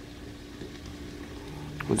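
Quiet room tone: a faint steady hum over low background hiss, with no distinct event. A man starts speaking right at the end.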